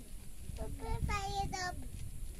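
A child's voice, higher-pitched than the nearby man's, singing a short phrase in the background over a low rumble.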